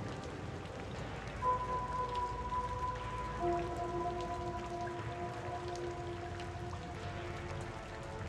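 Quiet ambient background music: soft, long-held tones, one coming in about a second and a half in and two lower ones joining about three and a half seconds in, fading out near the end. Under the tones runs a faint crackling, rain-like hiss.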